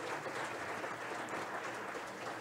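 Audience applauding in a large hall, heard faintly and steadily, with no voices over it.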